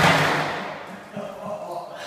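A sudden thud, then ice water splashing and spattering on a tiled floor and fading over about a second, with a man's gasping voice as the cold hits.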